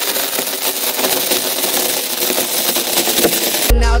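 Masking tape being pulled off its roll and laid down, a continuous crackling rasp. Near the end a hip-hop beat with heavy bass comes in.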